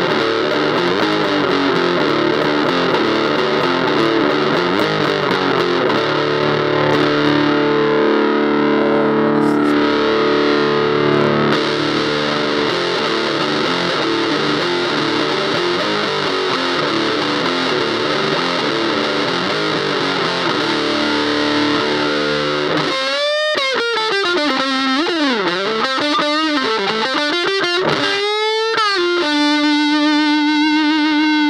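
Electric guitar played through an Electro-Harmonix Bass Big Muff Pi fuzz pedal with its switch on normal: thick, heavily fuzzed chords and riffs. About 23 seconds in it cuts briefly, then single lead notes bend up and down and settle into a held note near the end.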